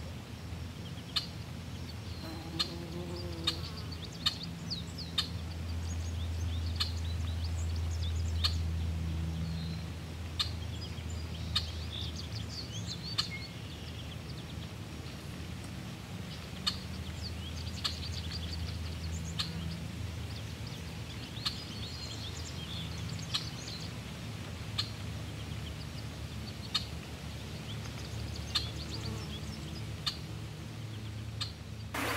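Hiking footsteps on rocky steps and loose rubble, one sharp step sound about every second or so. Under them runs a low steady rumble that swells for a few seconds, with faint high chirping throughout.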